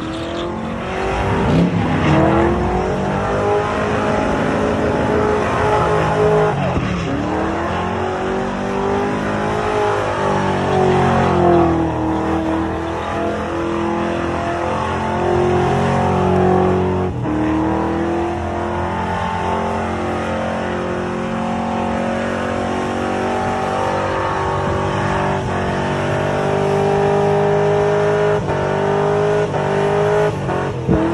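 Chevrolet El Camino's engine held at high revs through a long burnout, its pitch swelling and dipping every few seconds as the rear tires spin against the pavement.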